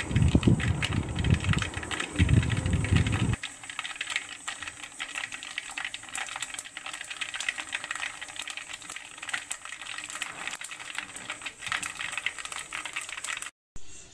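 Hot oil sizzling and crackling in a kadai, a dense run of rapid pops and crackles. A louder low rumble sits under it for the first three seconds or so. The sound cuts out briefly near the end.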